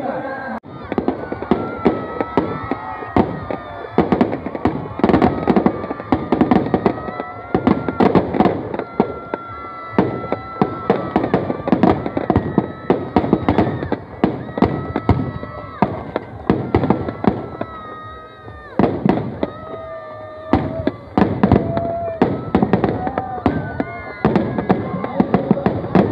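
Firecrackers packed inside a burning Ravana effigy going off in a dense, irregular string of sharp bangs and crackles. Crowd voices carry underneath.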